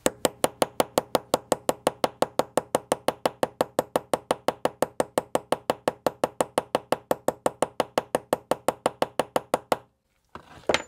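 Hammer giving rapid, light, even taps to a snap-setting tool on a brass snap fastener sitting on a metal anvil, about six taps a second, stopping just before the end. The taps are doming the fastener's post over to set it into the leather.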